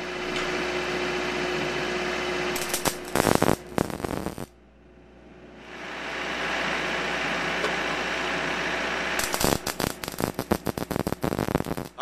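MIG welding arc on steel mounting brackets being welded to an iron stair rail: a steady hiss broken by stretches of dense, irregular crackle, with a brief drop almost to silence near the middle.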